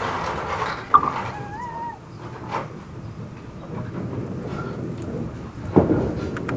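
Candlepin bowling alley ambience with crowd murmur and a brief wavering squeal just after a second in. In the second half a candlepin ball rolls down the lane with a low rumble, and a sharp knock comes just before the end.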